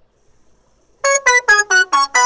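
About a second of near silence, then an electronic keyboard starts a fast run of short, detached notes, about five a second, stepping mostly downward in pitch: the opening riff of a pop song.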